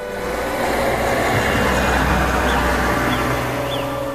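Steady road noise from a moving vehicle, a low rumble, over faint held music.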